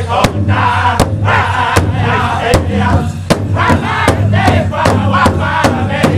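Powwow drum group: several men singing high and loud in unison while striking one large shared drum together with sticks. The drum strokes come about every three quarters of a second, then about four seconds in they quicken to a steady beat of about two and a half strokes a second.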